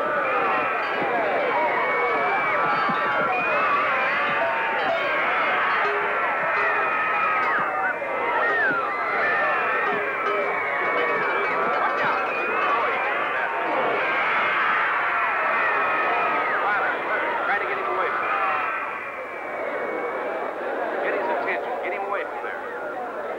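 Rodeo grandstand crowd shouting and screaming, many voices at once, easing off somewhat near the end.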